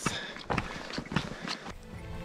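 Footsteps on a dirt road: a handful of irregular steps and taps, a few per second.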